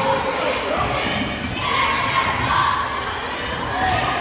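A basketball being dribbled on a hardwood gym floor, with repeated bounces, amid the voices of players and spectators echoing in a large gymnasium.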